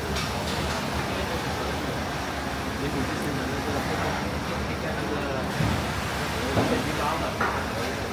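Steady hum of a factory test room full of running 3D printers, with voices talking in the background.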